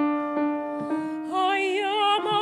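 A grand piano chord struck at the start and left ringing, then a female operatic voice comes back in about one and a half seconds in, singing with a wide vibrato over the piano.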